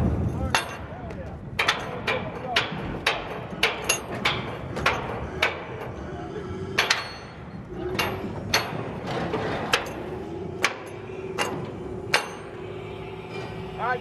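A steel hand tool striking and working the metal connector hardware at the joint between two ribbon-bridge bays: a string of sharp, ringing metallic clanks, two or three a second at first, then more spread out after about six seconds.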